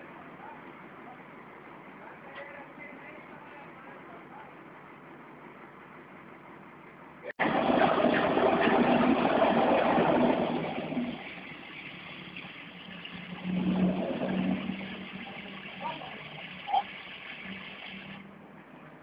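Truck-mounted crane's engine speeding up under load as the boom lifts a heavy tree stump. It comes in suddenly and loud about seven seconds in, eases off after a few seconds, then settles to a steady low hum that swells once more before the end.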